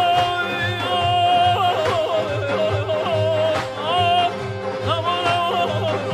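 A male singer in Persian classical style holds long notes broken by quick yodel-like throat ornaments (tahrir), over an ensemble accompaniment with a low steady drone and daf frame-drum strokes about once a second.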